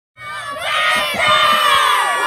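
A group of children, with a few adult voices, shouting and cheering together in one long shout that starts just after the beginning.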